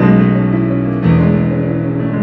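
Digital piano playing arpeggiated chords over low bass notes, with a new bass note struck at the start and another about a second in.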